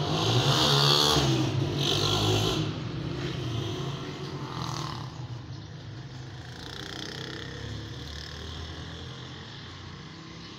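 A motor engine running, loudest about a second in and then fading slowly, like a vehicle going past.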